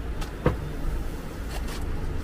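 Steady low rumble of room noise with soft rustling of a silk saree being unfolded and spread out, a short knock about half a second in, and a few faint swishes of the cloth near the end.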